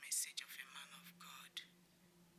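A woman whispering in short, breathy bursts, over a low steady hum that comes in about a third of a second in.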